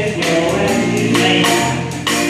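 Live band playing a pop song with singing: drum kit with cymbals keeping a regular beat under bass, guitar and horns.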